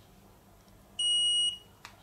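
KomShine KPM-25M optical power meter giving one high, steady beep about half a second long, about a second in: the REF button has been held long enough and the meter has stored the reference value.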